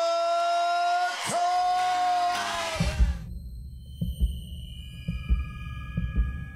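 A ring announcer holds the winner's name in a long drawn-out call. About three seconds in it gives way to outro music: deep thumps roughly once a second, often in pairs, under high held tones.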